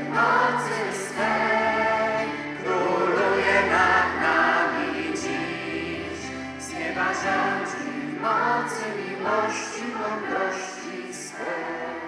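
A young girls' choir singing a hymn in unison, accompanied by acoustic guitar.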